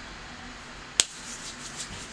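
A single sharp click about a second in, over faint rubbing of fingers on the skin of the neck as a highlighter is worked in.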